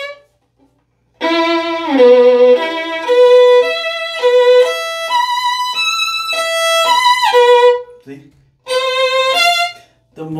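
Solo violin playing a short melodic phrase after about a second's pause, each note going straight into a big, fat vibrato the instant the finger lands, with a couple of downward slides between notes. This is the 'awesome vibrato' style, immediate and wide rather than eased into. A brief second phrase follows near the end.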